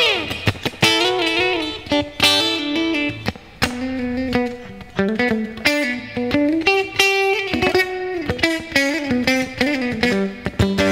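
Clean electric guitar on a single-cutaway solid-body, played in an improvised passage of ringing chords and single-note lines. Near the start a quick slide runs down the neck, and a few notes are bent slightly about halfway through.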